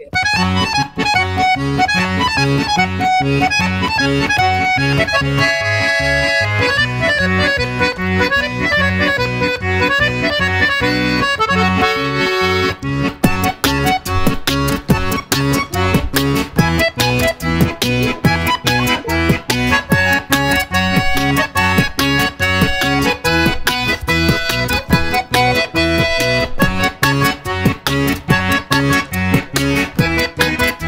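Bayan (Russian chromatic button accordion) playing a melody over a pulsing bass accompaniment, an Indian song by request. About 13 seconds in, it picks up a quicker, pulsing rhythm.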